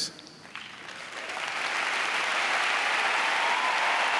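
Large arena crowd applauding: the clapping swells from quiet about a second in and then holds steady.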